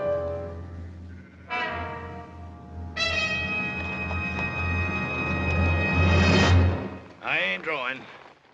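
Dramatic orchestral film score with a rolling timpani rumble under brass chords. The music builds to a loud held brass chord that cuts off suddenly near the end, followed by a short wavering call.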